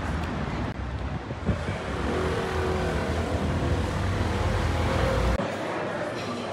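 Street traffic with a vehicle engine running close by: a steady low rumble whose pitch rises a little in the middle. It cuts off suddenly near the end, leaving quieter indoor room sound.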